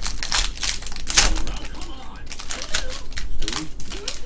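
Trading cards being handled and flipped through by hand, a quick, irregular run of sharp clicks and snaps as the cards slide against one another.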